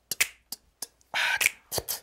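Finger snaps keeping a slow groove at the start of an a cappella song: a handful of sharp single snaps, with a longer hissing beatboxed snare a little over a second in.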